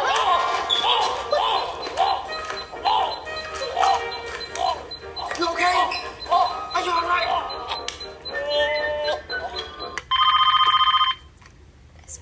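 A home telephone rings once near the end, a loud, steady electronic ring lasting about a second.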